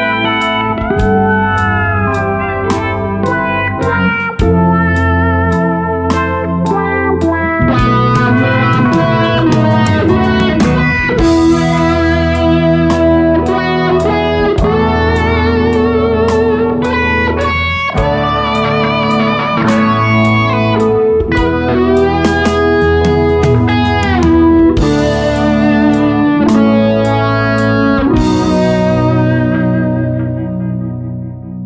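Electric guitar played through an Electro-Harmonix Cock Fight Plus wah pedal into a distorted amp, the wah sweeping the tone as the pedal rocks, over a steady drum beat and bass line.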